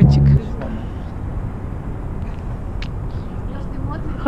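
Music with a deep bass beat stops abruptly about half a second in, leaving a steady low rumble of outdoor city background noise.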